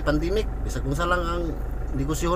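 A man's voice talking, with a drawn-out held sound about a second in, over the steady low rumble of the car he is riding in.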